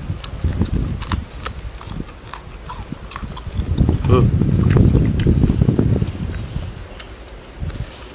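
Eating raw young kapok fruit close to the microphone: crisp snapping clicks of the pods being broken and bitten, with a louder, muffled stretch of chewing in the middle and a short hum of voice about four seconds in.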